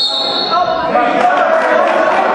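A referee's whistle gives one short blast of about half a second, followed by shouting voices and a few thuds, echoing in a large gym.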